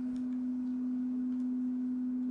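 A steady low hum held at one pitch, with faint background noise underneath; no speech.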